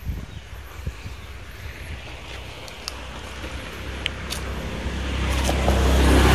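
Low rumble of a passing motor vehicle that grows louder over the last few seconds, with a few light clicks.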